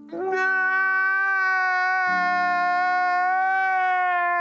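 A man wailing in one long, loud, high cry that starts a moment in and holds almost level in pitch, over a low steady hum.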